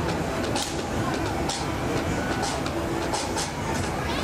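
Polyp fairground ride running, its cars spinning on their arms: a steady rumble and clatter with short sharp hissing bursts every second or so, over the noise of voices.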